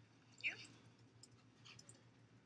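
One short spoken word about half a second in, falling in pitch, then near-quiet room tone with faint scattered clicks.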